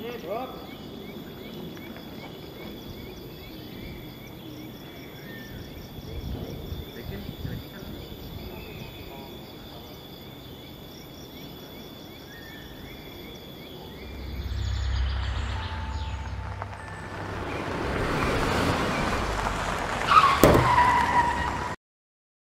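A vehicle approaching and passing, growing louder over the last several seconds, with a sharp knock and a brief high squeal just before the sound cuts off abruptly. Faint insect trilling runs steadily underneath.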